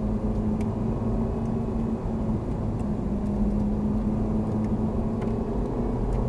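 Ferrari 458 Italia's V8 engine running at fairly steady revs, heard from inside the cabin as the car drives on track.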